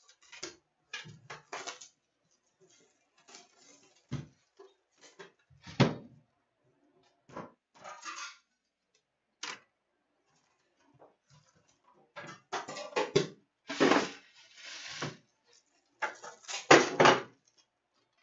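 Metal hockey-card tin being handled and opened: scattered clicks, clinks and scrapes of the tin and its lid on a glass counter, then louder bursts of rustling in the last six seconds as the foil card packs are taken out.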